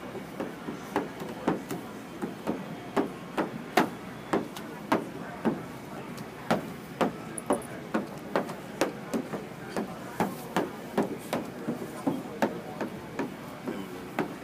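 A quick, uneven series of sharp knocks, about two or three a second, over faint background voices.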